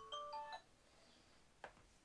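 Smartphone tone playing a chiming, marimba-like melody that cuts off abruptly about half a second in. A single short click follows near the end.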